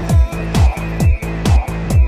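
Eurodance club track from a nonstop mix: a four-on-the-floor kick drum at about two beats a second, with a bass line between the kicks and hi-hats above. No vocals.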